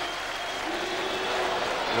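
Steady football stadium crowd noise from the stands, with a faint held note from the crowd partway through.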